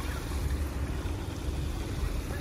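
Steady outdoor noise: wind buffeting the microphone with a low rumble, over the even rush of water spilling into a small rock-lined stream.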